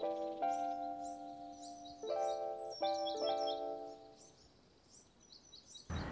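Background music of sustained instrumental notes that fades out over the first four seconds. Throughout, a small bird gives short, high chirps over and over; these are left almost alone as the music dies away.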